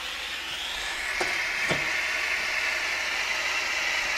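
Acetylene soldering torch burning with a steady hiss as it heats its soldering copper. Two faint clicks come about half a second apart, a little over a second in.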